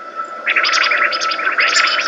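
Soundtrack audio: a steady high tone, joined about half a second in by a dense, rapid flurry of chirping, warbling sounds.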